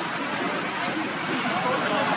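Outdoor background noise with indistinct voices, and two short, thin, high tones one after the other in the first half.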